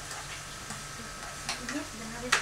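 Chicken pieces sizzling in oil in a frying pan on a gas stove while a spatula stirs them, sautéing the chicken to brown it. There is one sharp clack of the utensil about one and a half seconds in.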